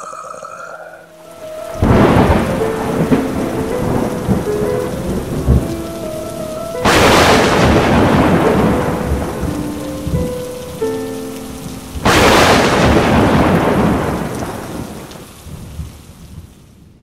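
Thunderstorm: steady rain with three loud claps of thunder about five seconds apart, each rumbling away over a few seconds, with held low music notes underneath.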